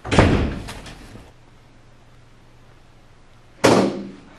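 Two loud bangs about three and a half seconds apart. The first rings on for about a second, and a faint low hum lies between them.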